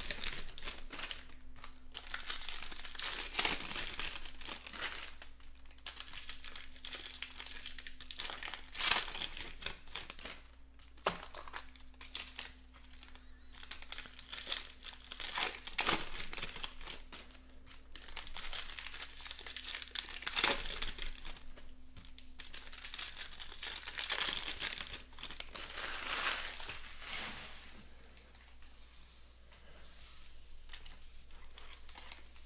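Foil wrappers of Topps Chrome Jumbo trading-card packs crinkling and tearing in irregular bursts as hands work them open, tapering off near the end.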